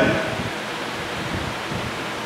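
A pause in a man's speech, filled by a steady hiss of background noise.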